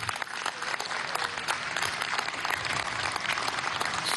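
People applauding: steady, dense clapping that holds until speech resumes.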